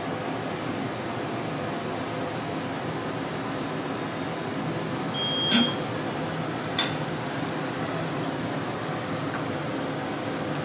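Steady hum of ventilation and equipment fans, with a short high beep about halfway through and a click about a second later.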